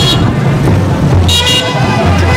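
Short high toots of a vehicle horn: one at the very start and a quick double toot about a second and a half in, over a steady low hum.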